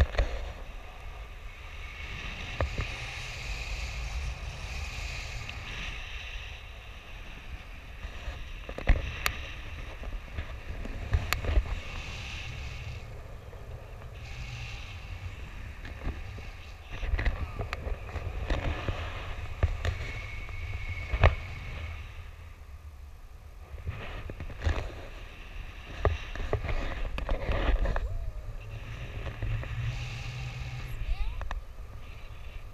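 Wind rushing over an action camera's microphone in paraglider flight: a steady low buffeting rumble that swells and eases, with a few sharp knocks.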